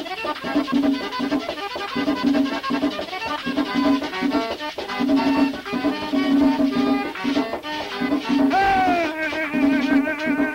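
Merengue típico in pambiche rhythm, played by a button-accordion-led conjunto: quick accordion melody over a steady, repeating beat. Near the end a held note slides down and wavers.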